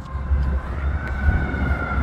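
A siren wailing in one long, held tone that climbs slowly in pitch, with wind rumbling on the microphone underneath.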